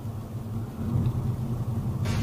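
Steady low engine and road rumble inside a moving Honda Civic's cabin, swelling slightly about a second in.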